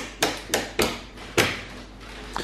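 Wall light switches being clicked several times in quick succession: about five sharp clicks over the first second and a half.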